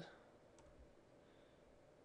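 Near silence: faint room tone with a single faint computer-mouse click about half a second in.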